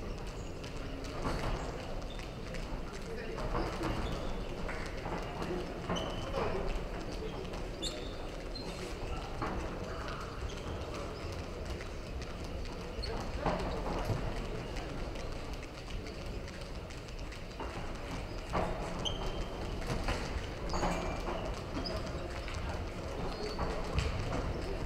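Amateur boxing bout in a large hall: irregular knocks and thuds of the boxers' footwork and gloved punches in the ring, over a steady hall hubbub with shouting voices from around the ring.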